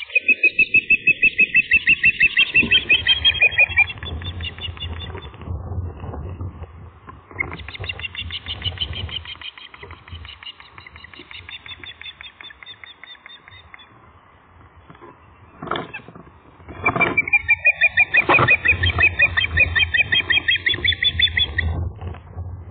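Ospreys calling: rapid series of high, whistled chirps at about six a second, in three long bouts.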